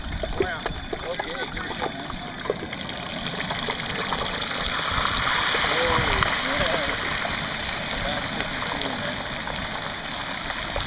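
Hot oil in a turkey fryer pot sizzling and bubbling hard as a whole turkey is lowered into it, the hiss swelling a few seconds in as the oil foams up over the rim of the pot.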